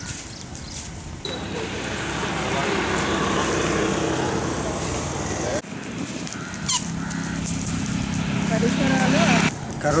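Outdoor roadside noise with a motor vehicle engine running, which breaks off abruptly about halfway through and resumes as a steady low hum. A man's voice begins near the end.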